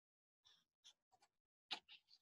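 Faint paper rustling, a few brief soft scratchy rustles with the loudest near the end, as the pages of a service book are handled.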